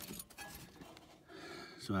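Faint rubbing and a few small clicks as a hand pulls rubber hoses back in a UTV engine bay, with a man's voice starting near the end.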